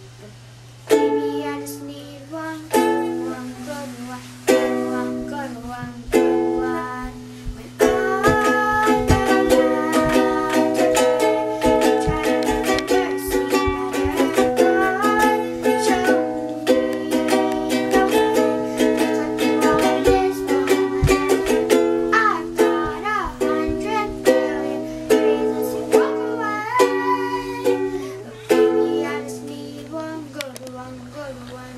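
Ukulele being played: separate chords with short pauses at first, then steady continuous strumming from about eight seconds in.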